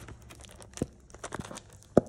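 Panini Mosaic Basketball blaster box being opened and a foil card pack pulled out and torn open: crinkling and tearing with a few sharp clicks, the sharpest at the very end.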